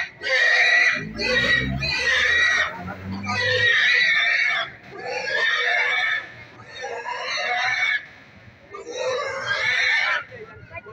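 Domestic pigs squealing loudly as they are grabbed and handled, in about seven long, shrill cries in a row with short breaks between them: the distress squeals of pigs being caught.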